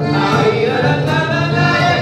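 A cueca played live: men's voices singing together over an accordion, two strummed acoustic guitars and a charango.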